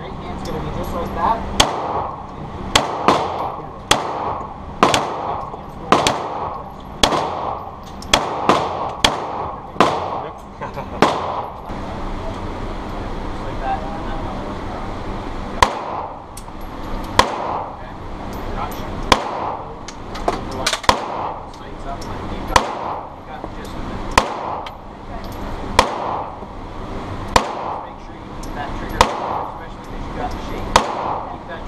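Glock 17 9mm pistol shots echoing in an indoor range: a string of about ten shots over the first eleven seconds, a pause of a few seconds, then another string of about ten spread out to the end.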